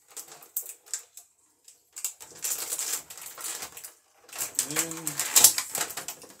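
Clear plastic packaging crinkling and rustling as it is handled and pulled open by hand, in uneven bursts with the loudest crackle near the end. A short hummed murmur from a man comes just before it.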